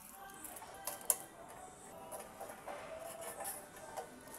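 Faint handling sounds of a plastic motorcycle fuel pump assembly being worked out of the fuel tank opening: light clicks and knocks against the tank rim, the sharpest about a second in.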